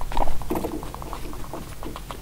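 Guinea pigs chewing and rustling dry timothy hay: a quick run of small crunches and clicks, loudest about a quarter of a second in.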